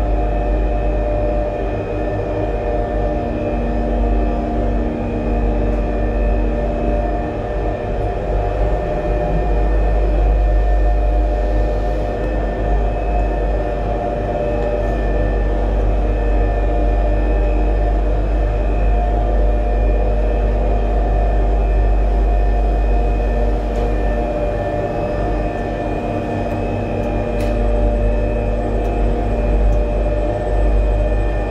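Steady low rumble and droning hum of a cable car's station machinery, heard from inside a gondola cabin as it creeps through the station; the hum tones hold nearly unchanged throughout.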